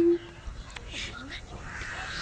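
A girl's held sung note ends just after the start, followed by a pause in the song filled only with faint background noise and a few brief faint sounds.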